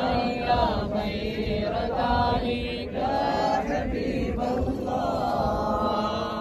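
Men's voices chanting an Islamic devotional prayer in drawn-out melodic phrases.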